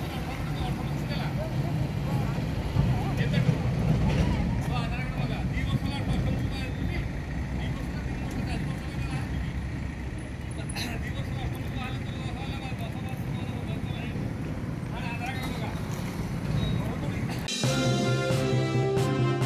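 Roadside traffic noise: a steady rumble of motorbikes and other vehicles passing, swelling about three seconds in, with indistinct voices. Music starts just before the end.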